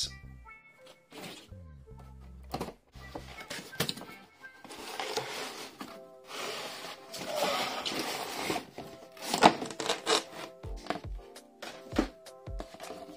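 Background music over the rustling and scraping of cardboard packaging as a plastic toy dinosaur figure is pulled out of its box, with a few sharp knocks, the loudest near the end.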